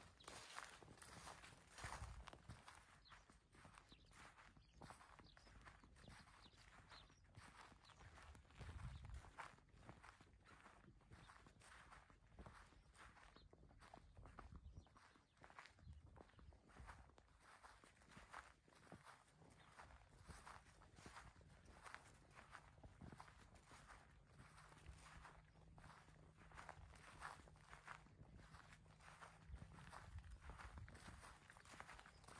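Footsteps of a person walking through leafy green ground cover and grass, a quiet steady crunch and rustle about two steps a second.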